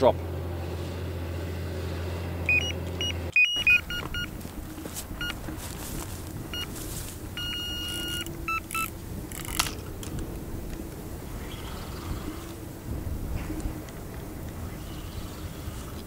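A tractor engine running steadily while it ploughs. From about three seconds in, an electronic carp bite alarm beeps in quick runs, with a few longer held tones, as a fish takes line.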